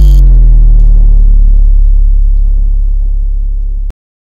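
Logo-sting sound effect: a deep bass hit whose pitch is still sliding down at first settles into a low rumble that fades slowly, then cuts off suddenly near the end.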